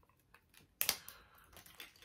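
Small glass rum bottle handled in the hands: light taps and clicks, with one sharper knock about a second in.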